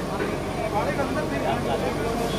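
Several people talking at once over the running diesel engine of a backhoe loader.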